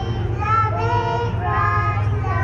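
A young child singing short held phrases into a stage microphone, amplified through a PA, over a steady low hum.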